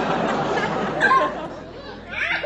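Young children laughing and chattering in a noisy jumble, with a brief louder burst about a second in before the noise dies down.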